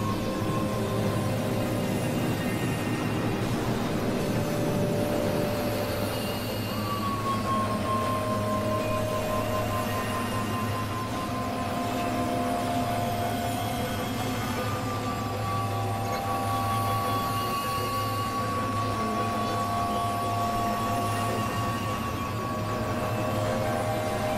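Experimental synthesizer drone music: a steady low hum under a noisy wash, with long held high tones that each open with a short downward slide, coming in about 7 and 15 seconds in.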